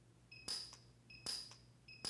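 PUK U5 micro TIG welder firing weld pulses in rapid-fire mode as the electrode touches the steel. Each pulse is a brief crackling snap, about every 0.8 s, and each comes just after a short high beep.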